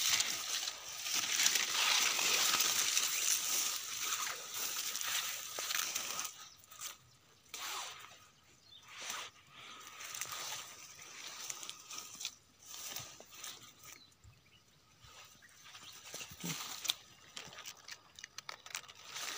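Rustling of dry leaves and brush as someone pushes through undergrowth, with footsteps on leaf litter. It is loud and continuous for the first six seconds, then drops to quieter, scattered rustles.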